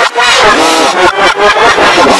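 Loud, electronically distorted shouting voice played backwards, its pitch shifted into several layered copies at once (a 'G-Major' edit of the Angry German Kid's yelling), so the words come out as garbled, wavering howls.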